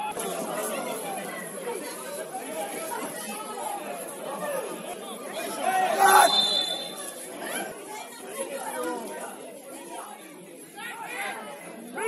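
Overlapping voices of players and spectators calling and chattering around a football pitch. About halfway through there is a loud burst that carries a brief high steady tone.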